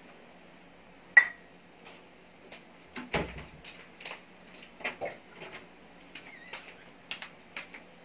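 A frying pan of oil heating on a portable stove: a steady low hum under scattered sharp ticks and clinks. The loudest is a single ringing metal clink about a second in.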